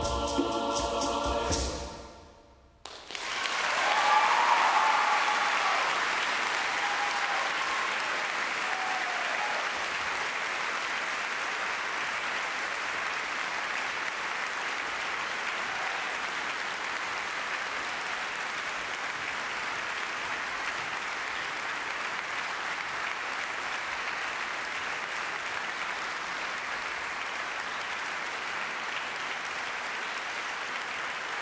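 A choir ends a song on a held chord that dies away in the hall's reverberation about two seconds in. Audience applause then breaks out, loudest at first with a few whoops, and carries on steadily.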